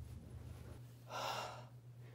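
A person's single short, breathy breath about a second in. Beneath it is a low steady hum that cuts off just before the breath.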